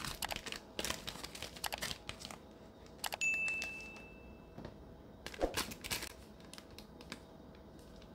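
Crinkling of a clear plastic bag as the wrapped user manual is handled, in bursts early on and again about five seconds in. About three seconds in there is a click followed by a steady high chime, fitting the on-screen subscribe button's click-and-bell sound effect.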